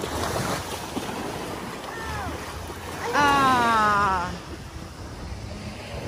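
Small waves washing onto a sandy shore, with wind rumbling on the microphone. A voice calls out briefly about two seconds in, then a louder, high-pitched call lasting about a second follows.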